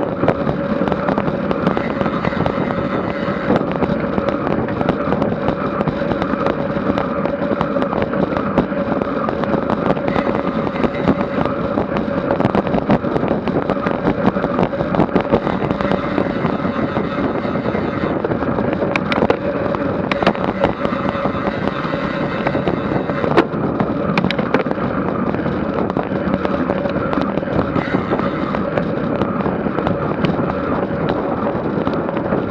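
Wind rushing over a bicycle-mounted Garmin VIRB action camera's microphone and road-bike tyres on asphalt at about 25 mph in a group ride, with a steady hum and scattered sharp clicks and ticks from the bike and road.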